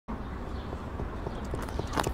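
Footsteps sound effect: hard shoes clicking on pavement about three to four times a second, getting louder toward the end, over steady background noise.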